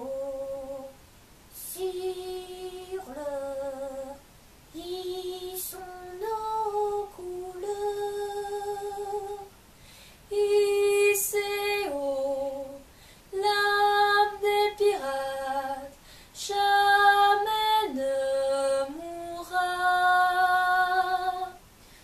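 A woman singing unaccompanied: a slow melody of long held notes in short phrases, with brief breaths between them.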